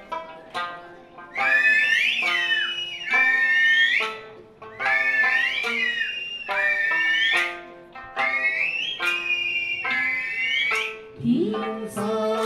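Eisa music: a sanshin plucking a slow melody, joined from about a second in by loud, high whistled phrases that slide upward and repeat every couple of seconds. Near the end a voice begins singing a held note.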